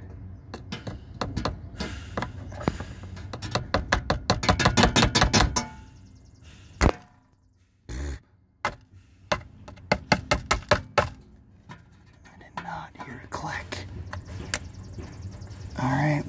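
Repeated tapping on the EVAP canister vent valve solenoid of a 2012 Ford Fusion 2.5L: a fast run of knocks for about five seconds, then a few single knocks and another short run about ten seconds in. The valve is commanded on but draws no current, and it is being tapped to see if it will click; no click is heard, and it may be a dead solenoid.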